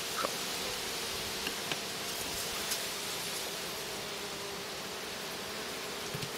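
Honeybees buzzing in flight around their hive: a steady hum, with a few faint clicks.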